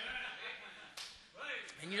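A pause in a man's amplified speech: a short breathy noise at the start, then a single sharp click about a second in, before he starts speaking again.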